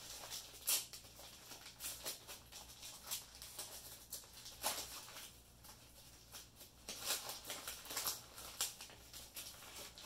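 Plastic packaging rustling and crinkling as it is handled, in irregular bursts, loudest about halfway through and again near the end.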